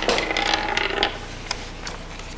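Book pages being leafed through quickly at the lectern: a rapid rustling run of small ticks for about a second, then a single click.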